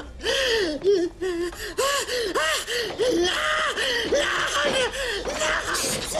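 A man gasping and crying out in panic, a string of short wailing cries about two a second, over a low hum.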